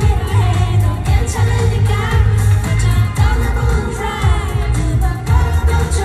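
A pop song over a concert PA, recorded from the audience: a female voice sings the melody over a steady, bass-heavy beat.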